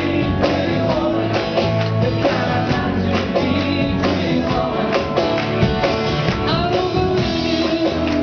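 Live rock-and-roll performance: a male singer singing at the microphone over guitar and band accompaniment with a steady beat.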